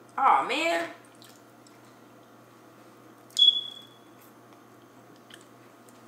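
Crab legs being snapped and eaten at a table: faint small shell crackles, a short vocal sound right at the start, and a sharp click with a brief ringing tone a little over three seconds in.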